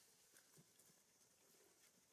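Near silence: faint outdoor ambience with a few soft ticks in the first second.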